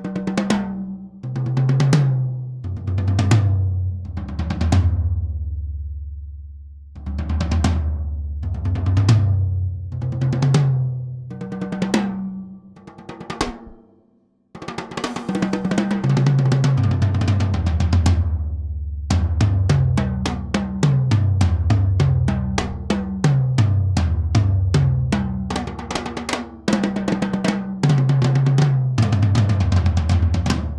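Thin maple toms of a TAMA Superstar Classic kit, with the snare wires off: 8, 10 and 12-inch rack toms and 14 and 16-inch floor toms. They are struck one at a time from highest to lowest, each left to ring out, and this is played twice. After a brief pause comes a roll and then fast fills running down across the toms. The toms are undamped under Powercraft II heads, so they ring wide open and long.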